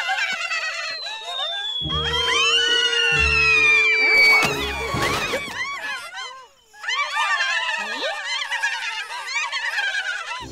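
Cartoon soundtrack: background music with the high, squeaky voices of small cartoon aphid characters cheering and chattering, and a long falling whistle-like glide in the first half. The sound drops out briefly past the middle.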